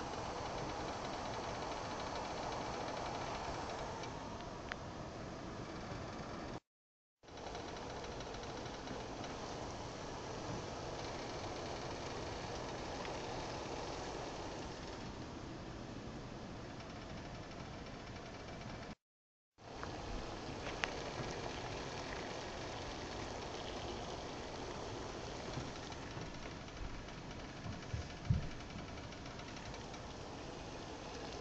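Pot of water at a full boil on an electric stove, a steady bubbling rumble that cuts out briefly twice. A few sharp clicks and low knocks come near the end.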